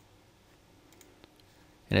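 A single computer mouse click, then a few faint clicks about a second in, over quiet room tone.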